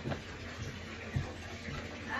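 A few faint, low thumps over a quiet room background, the clearest a little past one second in.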